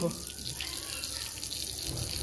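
Steady splashing of a water jet spraying onto a wet dog's coat and the wet concrete floor beneath it.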